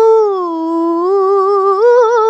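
A woman reciting the Qur'an in the melodic tilawah style, holding one long vowel with fine wavering ornaments. The pitch sags slightly and then steps up near the end.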